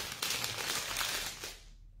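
Clear plastic bag crinkling and rustling as rolls of felting wool are pulled out of it, dying away near the end.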